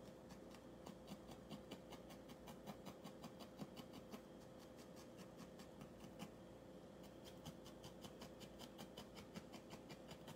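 Barbed felting needle jabbing repeatedly into a wool puppy head as it is shaped and firmed, a faint, quick, regular poking at about four strokes a second.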